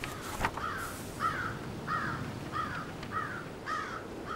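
A bird calling over and over in an even series, a little under two calls a second, against a steady background hiss. A single sharp click comes about half a second in.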